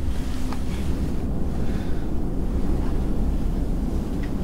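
Wind buffeting an outdoor microphone: a steady low rumble.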